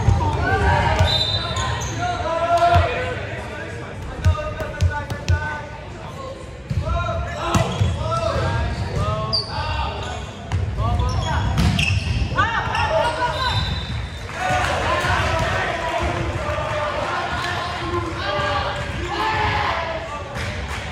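Volleyball being played in a gym: several sharp hits and bounces of the ball, echoing in the hall, over near-constant shouting and chatter from players and spectators.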